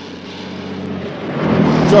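Kenworth W900 semi-truck approaching: its Detroit Diesel engine drones steadily, and the engine and tyre noise grow louder as the truck nears and begins to pass.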